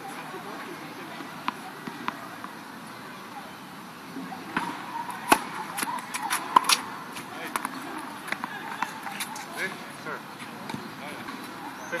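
Tennis balls struck by rackets and bouncing on an outdoor hard court: a series of sharp pops, the loudest about five seconds in, over low background noise.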